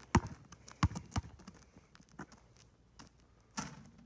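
Basketball bounced on an asphalt court: three sharp bounces in the first second or so, then a fainter one. A brief rushing noise comes near the end.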